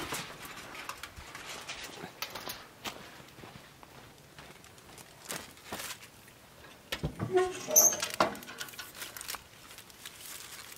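Light taps and clicks of handling at a charcoal offset smoker. About seven to eight seconds in comes a louder clatter with a short squeak as the smoker's metal lid is raised on its hinge.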